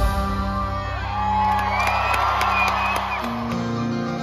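A live band's sustained chord with audience cheering and whoops over it. A little after three seconds the held low note changes and guitar comes in as the next passage begins.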